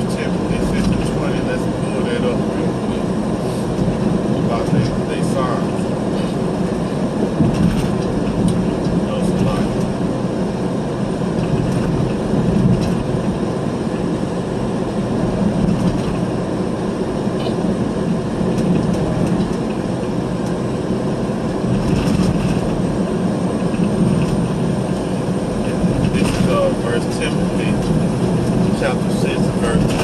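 Steady road and engine noise heard from inside a moving car's cabin: a continuous low drone with tyre noise that holds level.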